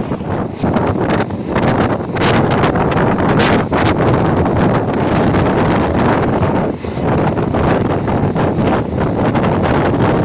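Wind rushing loudly over a phone microphone held at an open window of a moving train, with the train's running noise beneath. The noise is steady apart from a brief dip about seven seconds in.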